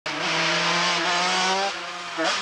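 Racing motorcycle engine running at high revs as the bike approaches, its pitch climbing gently, then dropping and quietening near the end.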